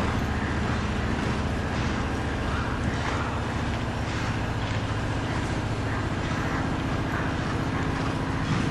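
Steady low mechanical drone with a constant hum.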